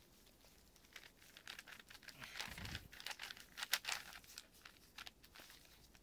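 Plastic 8x8x8 Rubik's cube being turned by gloved hands: a faint run of quick clicks and scrapes as its layers rotate, busiest in the middle.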